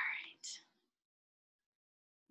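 A short whispered utterance under a second long, ending in a brief hiss, then silence.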